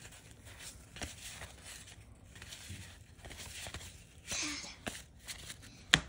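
1989 Topps cardboard trading cards being flipped and slid against one another in the hands, with soft papery rustles and small clicks. A louder rustle comes about four and a half seconds in, and a sharp tap comes just before the end.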